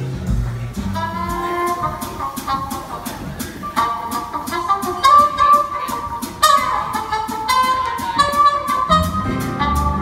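Small jazz band playing live: a trumpet carries the melody over a steady cymbal beat and piano, starting about a second in. The bass and low piano chords come in strongly near the end.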